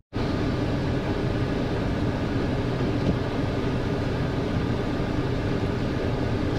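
Steady cabin noise of a car moving slowly in traffic on a wet road: engine hum and tyre noise.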